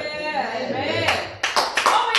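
A small group of people clapping their hands, starting about a second in as separate claps, about three to four a second, after a man's voice.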